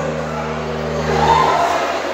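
The last held low keyboard chord of a live forró song sounding steadily and cutting off just over a second in, over a murmur of crowd voices and a short shout.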